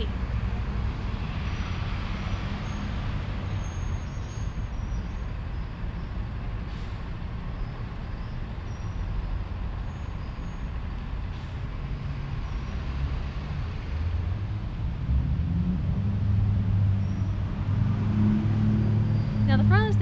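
Steady low rumble of street traffic. In the last five seconds it grows louder, with a large vehicle's engine adding a steady low hum.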